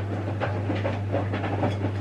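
Washing machine running: a steady low hum with irregular light clicks and knocks over it.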